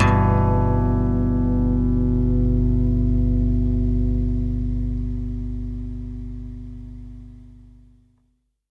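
The last chord of an alternative rock song, played on electric guitar with effects, held and ringing out, then slowly fading away to nothing near the end.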